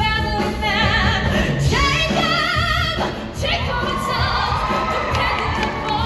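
Live musical-theatre singing over backing music, with sung notes held with vibrato. About three and a half seconds in, a swell of group shouting rises over the music for a couple of seconds.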